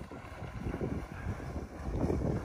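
Wind buffeting the microphone as an irregular low rumble, with faint splashing from someone wading through shallow lake water.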